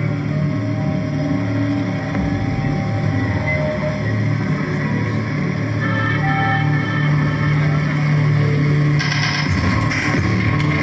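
Live instrumental music: a sustained low drone under slow held notes, dark and atmospheric. About nine seconds in, a brighter, denser layer comes in as the piece builds.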